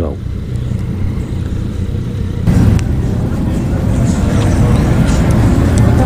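Motorcycle engines idling with a steady low rumble; a rougher, louder noise joins about two and a half seconds in.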